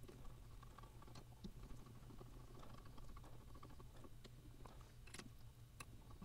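Near silence with a few faint small metal clicks, from a hex key tightening the grub screw that sets the barrel friction on a Proxxon PD 250/E lathe tailstock.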